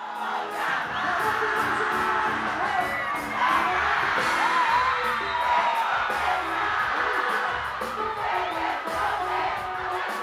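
A live pagode band playing, with a singer and a crowd cheering.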